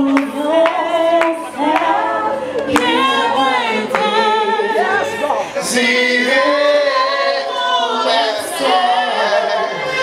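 A group of gospel worship singers, women's and men's voices, singing a worship song together.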